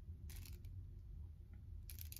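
Faint plastic clicks of a twist-collar makeup dispenser being turned to push the product up, once about a third of a second in and again near the end, over a low steady room hum.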